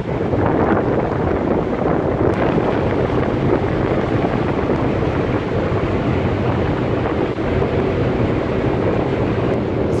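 Steady rush of wind across the microphone and water moving past a ship's hull, with a low drone underneath, aboard a ship under way.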